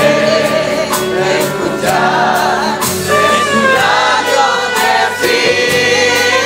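Church choir singing a hymn with a live band: trumpets, mandolins and guitars, piano and drums, keeping a steady beat.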